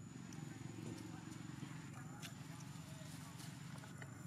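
Faint, indistinct vocal sounds over a steady low background noise, with a few light clicks.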